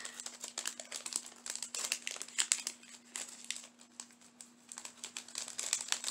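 Jewelry packaging crinkling and rustling in the hands as a stretchy bracelet is worked back into it: irregular crackles that thin out for a stretch past the middle, then pick up again near the end.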